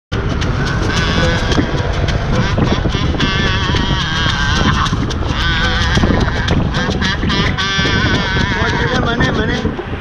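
Street jam: a kazoo buzzing a wavering melody over a small acoustic guitar being strummed and plastic-bottle shakers keeping a steady beat, with a steady low rumble underneath.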